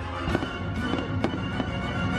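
Fireworks going off during an orchestral show soundtrack, with a quick run of sharp pops and bangs over the music.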